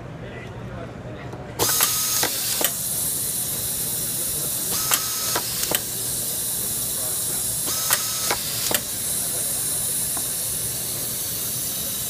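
Air-fed automatic inline screwdriver and screw feeder running: a steady compressed-air hiss starts about one and a half seconds in. Three cycles follow about three seconds apart, each a quick cluster of sharp clicks with a short high whine as a screw is fed and driven.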